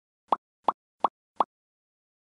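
Four short, identical pop sound effects in an even row, about three a second, as the end-screen graphics animate in.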